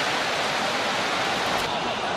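Stadium crowd noise: a steady, even wash of many voices from a large football crowd, heard through a TV broadcast.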